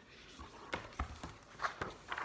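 A hardcover picture book being handled and lowered: a few faint, irregular knocks and paper rustles.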